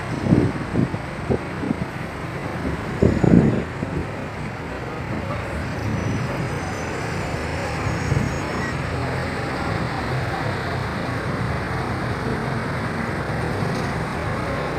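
Steady outdoor city traffic noise, with wind gusting on the phone microphone in the first few seconds.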